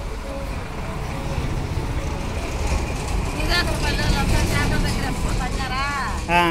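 Low rumbling background noise that swells through the middle, with a voice speaking briefly twice.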